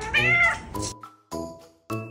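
A Chinchilla silver Persian cat giving one short, loud meow, an "unya!", that arches up and then down in pitch during the first second. It is an angry, complaining call, the kind she makes when her owner comes home late. Light plucked background music plays under it.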